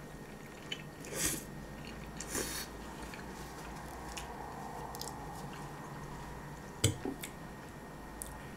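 Close-up eating sounds of a person chewing a mouthful of spaghetti, with two short wet mouth noises in the first few seconds. Near the end a sharp clink of a fork on a ceramic plate is the loudest sound, followed by a smaller one.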